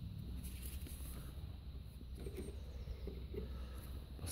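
A low steady hum with faint scattered clicks and rustles.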